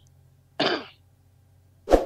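A man clears his throat with a short cough about half a second in. A single sharp click follows near the end.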